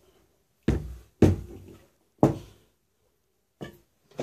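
Metal hydraulic pump assembly knocking against the workbench as it is handled and set down: three sharp knocks in the first couple of seconds, the middle one loudest, then a faint knock near the end.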